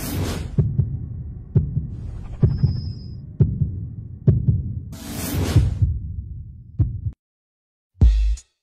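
Logo-intro sound effect: a low heartbeat-like thump repeating a little under once a second, with a loud whoosh at the start and another about five seconds in. It stops suddenly about a second before the end.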